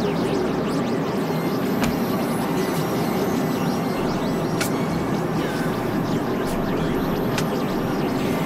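Dense, noisy experimental music: several tracks layered over one another in a thick, steady wash with faint drones, broken by a few sharp clicks.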